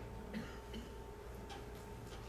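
A pause in the speech: low room tone with a steady faint electrical hum and a few soft, scattered clicks.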